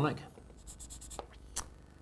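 Felt-tip marker pen scratching a quick tick mark onto a paper sheet, followed by two light clicks.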